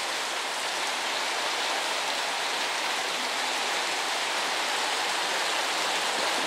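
Heavy rain falling on a corrugated sheet porch roof, a steady, even hiss with no break.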